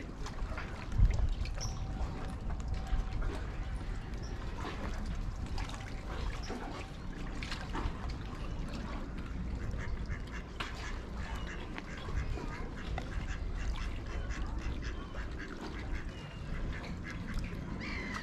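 Waterbirds on a lake giving short duck-like calls, scattered through, over a steady low rumble.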